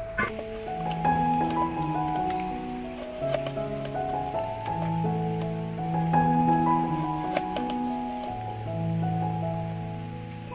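Steady high-pitched drone of forest insects, with soft background music of slow sustained notes over it. A few light clicks of a knife cutting through eggplant on a board.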